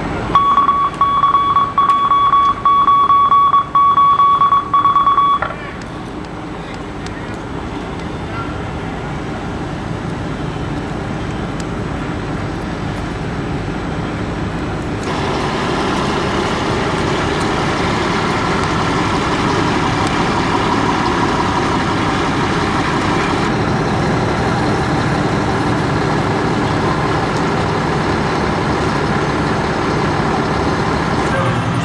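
A loud, steady, high electronic tone with a few brief breaks for about the first five seconds. After that comes the steady running of a fire engine with its pump engaged feeding charged supply hoses; it gets louder about halfway through.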